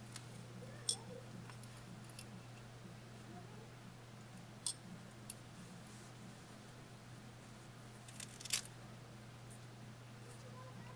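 Faint handling of a metal latch hook in yarn: a handful of sharp little clicks as its hinged latch snaps open and shut, the loudest cluster near the end. A steady low hum runs underneath.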